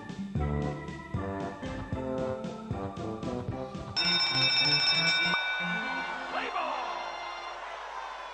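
Slot machine game audio: organ-style music in rhythmic chords plays through the free spins. About four seconds in, it cuts to a bright, ringing bell-like chime that marks the bonus feature being triggered. This fades into a noisy, crowd-like background.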